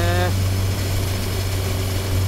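Honda CB1000R's inline-four engine and exhaust running at a steady, even pitch as the motorcycle cruises along the road.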